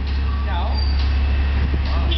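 Garbage truck's diesel engine running close by: a deep, steady, loud rumble.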